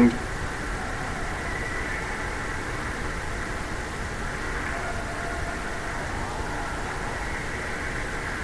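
Steady ice-rink ambience during a hockey game: an even hum with faint, indistinct voices of spectators, and no distinct stick or puck impacts standing out.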